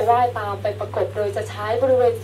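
A woman speaking Thai into a microphone, lecturing continuously, over a steady low hum.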